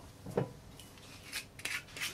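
A soft knock, then the screw cap of a bottle of Passoa liqueur being twisted open, making several short scratchy rasps.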